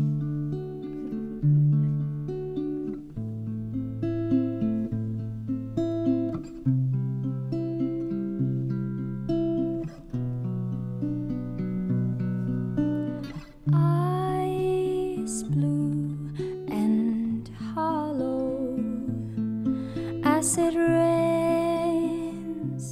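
Slow, picked guitar accompaniment with ringing notes. About 14 seconds in, a woman's singing voice comes in over it.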